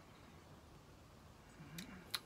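Near silence: room tone, with a faint short sound and a click near the end.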